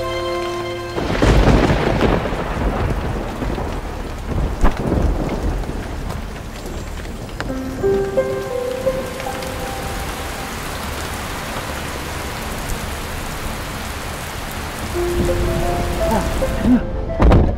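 Thunder cracks about a second in and again a few seconds later, over heavy rain falling steadily on pavement and a car.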